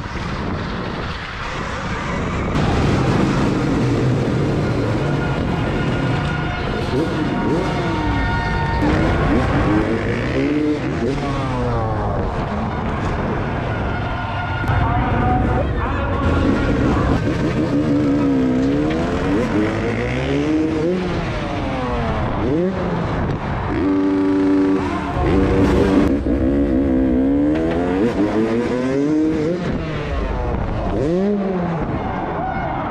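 Freestyle motocross bike engine revving hard, the pitch rising and falling over and over as the throttle is worked through the ramps and jumps.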